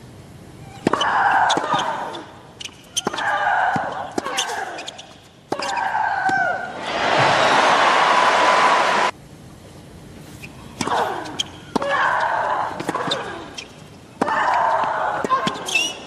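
Tennis match sound on a hard court: a tennis ball bouncing and struck by rackets, heard as short sharp knocks, with voices between them. A loud burst of crowd noise rises about seven seconds in and cuts off suddenly two seconds later.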